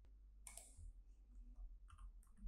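Near silence: room tone with a low hum and a few faint computer mouse clicks, about half a second in and again near the end.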